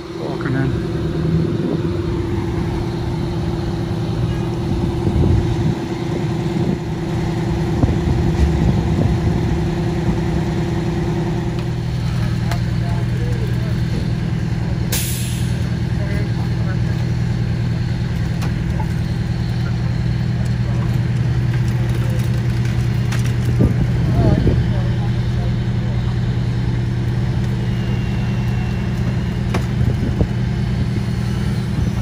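An engine running steadily, with a short sharp hiss about fifteen seconds in.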